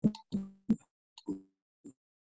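Short, clipped fragments of a woman's voice, about five brief sounds cutting in and out with dead silence between them, as speech does through a video call's noise gate.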